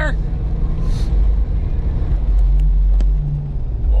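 Steady low rumble of engine and tyres heard from inside a Jeep Cherokee XJ's cabin as it drives on a snow-covered road, with a few faint ticks about halfway through.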